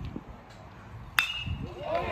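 A metal baseball bat hitting a pitched ball about a second in: one sharp ping with a short ringing tone, followed by spectators' voices rising.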